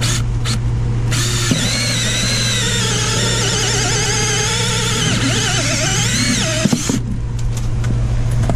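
Cordless drill driving a two-inch hole saw through the plastic knockout of a sump basin lid. Two short bursts open it, then a steady cut with a wavering high-pitched whine from about a second in, stopping abruptly near the end as the saw breaks through.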